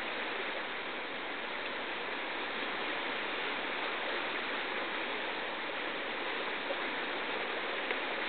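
Steady rushing of a fast, silt-laden glacial river running in whitewater rapids.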